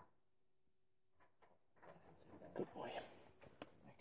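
Near silence with a faint steady hum, then from about two seconds in, rustling and handling noise with a few clicks and an indistinct, low voice.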